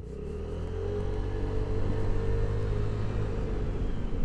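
Vespa GTS 125 scooter being ridden through town: its single-cylinder four-stroke engine runs with a steady whine over a deep rumble of riding noise.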